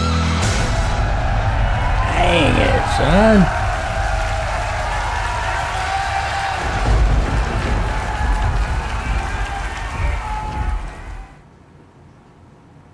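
A heavy metal band's final chord cuts off just after the start, and a concert crowd cheers and applauds, with one voice shouting about two to three seconds in. The cheering fades out near the end.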